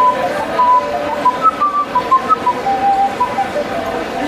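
Blue ceramic transverse ocarina playing a melody of short, pure, whistle-like notes that step up and down, quickening in the middle of the phrase.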